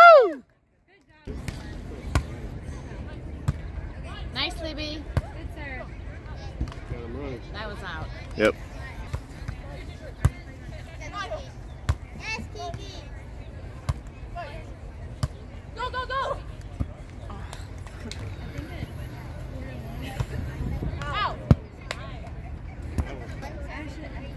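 Beach volleyball play: sharp smacks of hands hitting the ball every few seconds, with distant players' calls and voices, over a steady low rumble. The sound drops out for about a second near the start.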